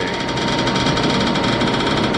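Rapid, regular ticking of a spin-the-wheel phone app's sound effect as its prize wheel spins, over a steady hum.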